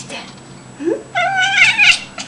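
House cat meowing: a short rising chirp a little under a second in, then one long, wavering, high meow that is the loudest sound here. The cat is calling at a bird it can see outside.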